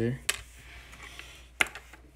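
Plastic LEGO pieces clicking against a stone countertop as they are handled and set down: two sharp clicks, one just after the start and a second about a second and a half in, with a few faint ticks between.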